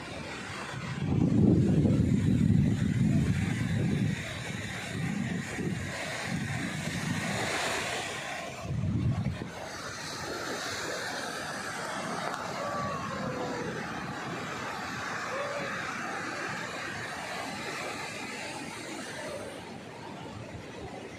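Wind buffeting the phone's microphone in gusts, loudest early on, over the steady wash of surf breaking on a sandy beach, which carries on alone through the second half.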